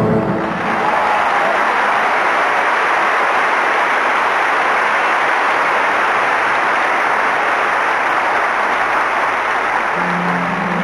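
A large audience applauding steadily, a dense even clapping that starts as the last sung note dies away.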